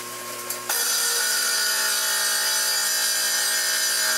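A power tool cutting a narrow strip of ceramic tile, starting suddenly about a second in and running at a steady pitch until it cuts off abruptly.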